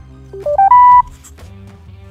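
Sena Nautitalk Crew marine intercom's power-on chime as its center and plus buttons are held together. Four quick electronic beeps step upward in pitch, and the last and highest is held for about a third of a second and is the loudest.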